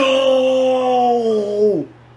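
A man's long, drawn-out vocal "oooh" of astonishment, rising at the start, held with a slow downward slide, and breaking off near the end.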